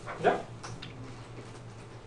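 A man's voice says one short questioning 'ya?' and then stops, over a faint steady low hum.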